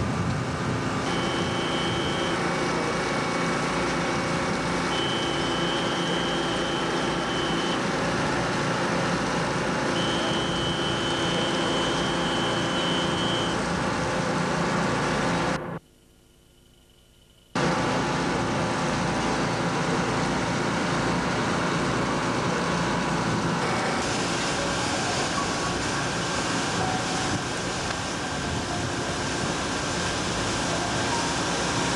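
Steady drone of a lake boat's engine under a constant rushing noise of wind and water. A faint high whine comes and goes three times in the first half, and the sound drops out for about two seconds past the middle, then resumes.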